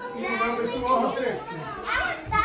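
Indistinct chatter of several people talking at once, children's voices among the adults'.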